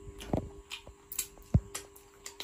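Eating sounds at close range: scattered wet clicks and smacks from chewing and licking fingers, two of them louder. A faint steady hum lies underneath.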